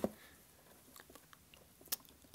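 Faint handling sounds of a plastic action figure being held and lined up against a clear plastic ruler: a few light clicks and taps, with a sharper click near the end.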